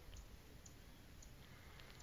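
Near silence: faint room tone with a few tiny, faint clicks.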